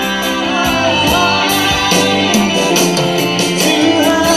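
Live band music at a concert: a largely instrumental passage with a steady beat, with little or no singing in this stretch.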